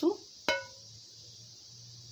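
A single ringing metallic clink about half a second in: a metal ladle knocking against the cookware while melted ghee is ladled over kunafa nests.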